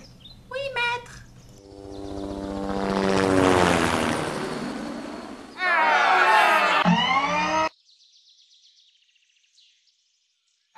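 An aircraft flying past as a sound effect: an engine drone swells and fades, its pitch falling steadily as it goes by. A loud voice follows for about two seconds, and then it goes nearly quiet.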